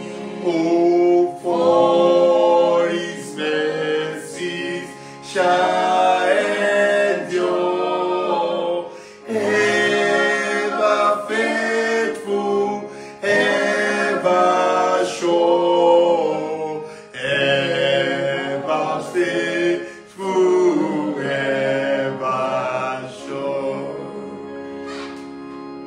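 A man singing a hymn in long, held notes, phrase after phrase with short breaths between.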